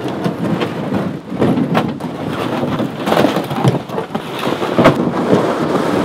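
Canoe hull dragged over grass: a loud, continuous scraping and rustling made of many small crackles.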